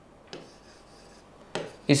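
Chalk scraping across a blackboard in short writing strokes: a faint one about a third of a second in, and a louder, longer one near the end as a word is struck through.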